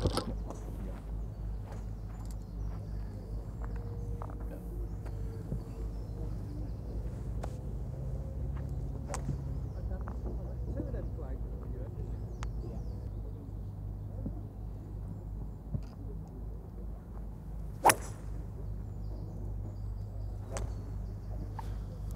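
A golf iron striking a ball off the turf: one sharp crack near the end, the loudest sound here, over steady low background noise and a few fainter clicks.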